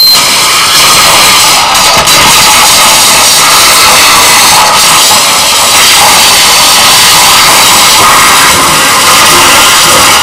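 Live harsh noise set: a dense, distorted wall of electronic noise, very loud and almost unbroken, with no steady pitch or beat.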